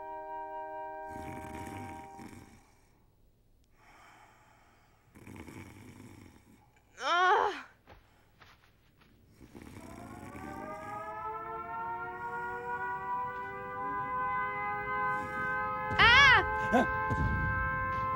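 Soft held woodwind notes fade out, then near-quiet. From about halfway, an air-raid siren winds up and holds a steady wail. Near the end, loud booms and rumbling of anti-aircraft fire come in, and a short falling cry cuts in twice, once before the siren and once over the booms.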